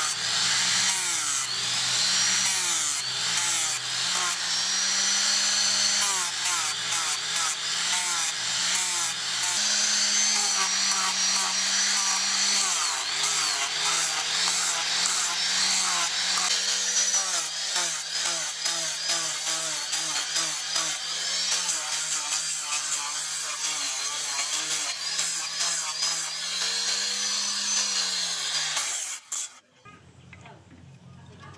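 Angle grinder with a sanding disc grinding a wooden axe handle, the wood rasping under the disc. The motor's whine dips and recovers in pitch over and over as the disc is pressed into and eased off the wood, and it stops abruptly near the end.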